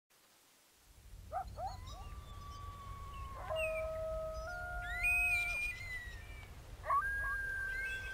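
Long, drawn-out animal howls that start about a second in. Each opens with a short rising yip and settles into a held note, and some howls overlap. A low, wind-like rumble runs underneath.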